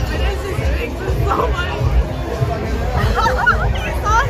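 Busy street chatter and crowd babble with background music over a steady low rumble, with voices rising out of the babble about a second in and again near the end.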